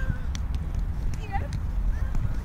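Roundnet rally: a few sharp taps and knocks of hands and feet striking the ball and the grass, with a short vocal call from a player partway through, over a steady low rumble.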